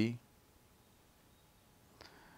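A man's narrating voice ends a word just at the start, then near silence: faint room tone.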